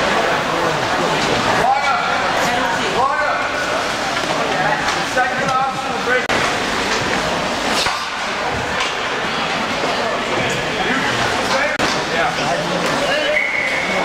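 Indistinct voices of several people talking and calling out, echoing in the large hall of an indoor ice rink.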